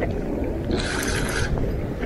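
Wind rumbling on the microphone over lake water, with a brief hiss about three-quarters of a second in.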